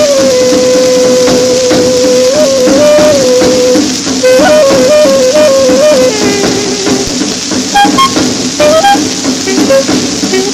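1946 swing dance-orchestra recording played from a 78 rpm shellac disc. The lead melody holds one long note, then runs through short up-and-down phrases, drops to a lower held note, and climbs to higher notes near the end, all over steady surface hiss.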